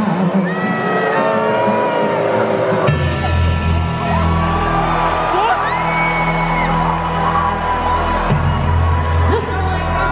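Voices singing and whooping in a large arena crowd, cut off abruptly about three seconds in by loud music with a heavy held bass line and a crowd's whoops over it.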